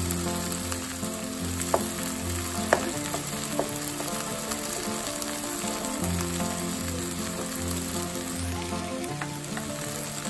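Okra, tomatoes and a garlic-chili paste sizzling in hot oil in a non-stick frying pan, stirred with a spatula. Three sharp clicks sound in the first few seconds.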